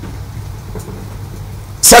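A brief pause in a man's speech filled by a steady low background hum, with the man's voice starting again near the end.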